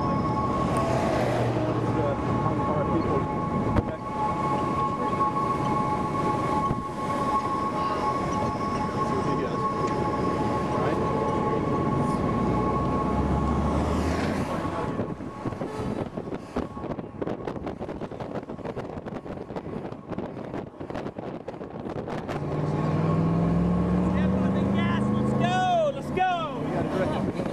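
Wind and traffic noise with a steady two-note siren tone held for about the first fifteen seconds. Near the end a vehicle accelerates close by and a siren starts a swooping wail.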